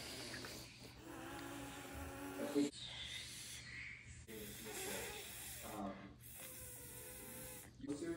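A person trying to whistle without fingers, blowing breathy, hissing, fluttering air past the tongue and teeth without getting a clear whistle note. There is a short pop about two and a half seconds in.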